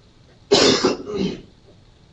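A person coughing: a loud, harsh cough about half a second in, followed at once by a shorter second one.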